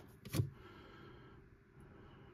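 Quiet room with faint handling of trading cards as they are moved through a stack by hand, and one short sharp sound about a third of a second in.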